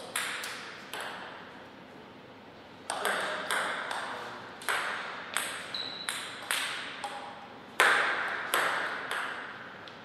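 Table tennis ball clicking off the rubber bats and the table: a few clicks near the start, a pause, then a rally from about three seconds in to about nine, roughly two hits a second, each click ringing briefly in the hall.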